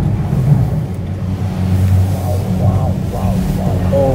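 Steady low rumble and hum inside a moving gondola cabin.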